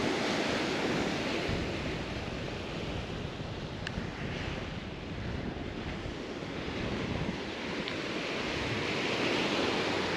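Small surf breaking and washing onto a sand beach, swelling and easing, louder at the start and again near the end, with wind buffeting the microphone. A faint click about four seconds in.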